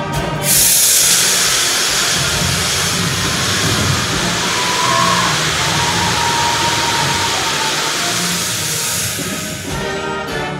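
Stage CO2 jets blasting a tall plume of white vapour: a loud hiss that starts suddenly about half a second in, holds for about nine seconds and fades near the end, with the band's music playing underneath.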